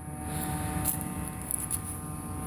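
Low rumbling handling noise from a phone camera being moved, over a steady faint hum, with two light clicks about a second apart.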